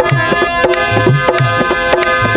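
Dholak and harmonium playing an instrumental passage. The harmonium holds a stepping melody of sustained reedy notes while the dholak keeps a brisk rhythm of deep bass strokes and sharp treble slaps.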